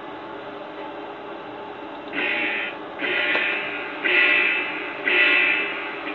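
Electronic alarm from the habitat-monitoring computer software: four loud tones about a second apart, starting about two seconds in. It signals an abnormal condition in one of the animal houses.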